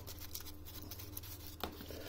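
Faint rustling of a small paper seed packet being handled, with a small click about a second and a half in, over a low steady hum.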